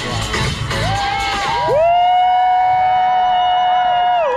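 Electronic dance music. The beat stops a little under two seconds in, and one long held note follows.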